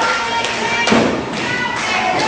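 A heavy thud about a second in, a wrestler's body hitting the ring mat, with a lighter knock just before it. Music is playing behind it.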